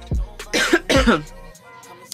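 A woman coughing briefly about half a second in, over background hip-hop music with deep bass hits.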